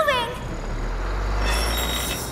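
Cartoon sound effect of a truck engine: a low rumble swelling for about a second and a half, with a high whine near the end, as the semi truck starts to move.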